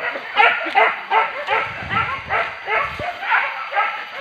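Hunting dogs barking in quick succession, about three short barks a second, many dropping in pitch, with a low rumbling noise in the middle.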